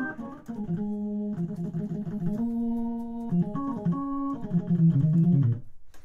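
Hammond organ played through a Leslie speaker: a run of held chords and single notes, changing every second or so, loudest towards the end and stopping abruptly just before it.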